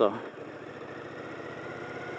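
Motorcycle engine running steadily at low speed while the bike rolls slowly, with road noise.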